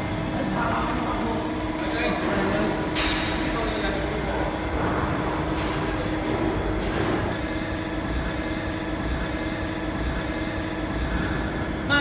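A Havesino DFQ3500 kraft paper slitter rewinder running with a steady machine hum while its hydraulic loading arm handles the parent roll. There is a short hiss about three seconds in and a few light knocks.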